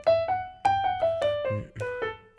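Digital piano playing a major scale exercise in an uneven, triplet-based rhythm. Single notes step up the scale to the top about a second in, then step back down.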